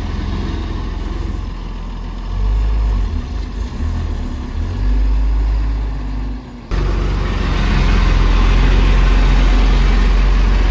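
Diesel engine of a laden Tata tipper truck running as it moves slowly across dirt, its level rising and falling through the middle. About two-thirds of the way in the sound jumps abruptly to a louder, closer engine sound that holds steady.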